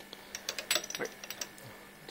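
A scatter of light clicks and clinks over about a second: a glass test tube and the glass voltameter being handled.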